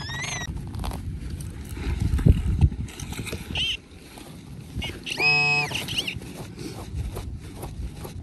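Digging in loose soil with a hand digger and gloved hands: scraping and crumbling earth over a low rumble, with louder scrapes about two seconds in. A short buzzing tone sounds about five seconds in.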